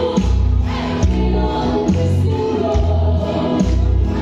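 Amplified live music: a woman singing into a microphone over a backing track with a heavy bass beat.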